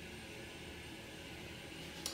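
Faint steady hiss of room tone, with no distinct event.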